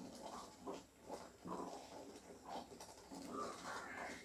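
Faint, irregular soft scrapes and plops of a wooden spatula stirring thick, bubbling almond paste in a nonstick pan, a few strokes a second.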